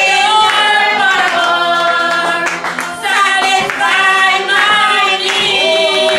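Several women's voices singing a worship song together, with hand clapping.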